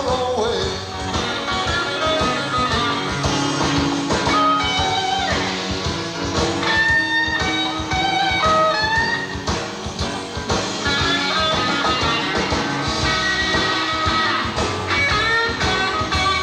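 A live blues-rock band playing an instrumental passage: a lead electric guitar plays single-note lines, some bent, over bass and drums.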